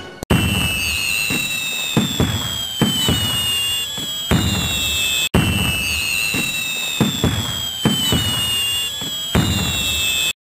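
Sharp bangs at uneven intervals under several high whistling tones that slide slowly down in pitch, a fireworks-like sound. The same five-second stretch plays twice in a row, restarting about five seconds in, as a looped recording would.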